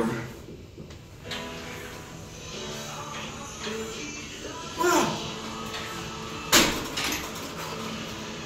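Background music with a strained grunt of effort just before five seconds in, as a chest press set is pushed through. About a second and a half later there is one sharp clank from the machine's weight stack being set down.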